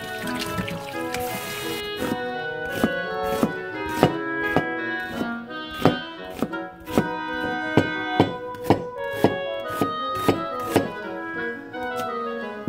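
Background music, with a kitchen knife slicing an onion on a plastic cutting board: sharp strokes about twice a second, from about two seconds in until near the end. Tap water runs over greens in a steel bowl for the first two seconds.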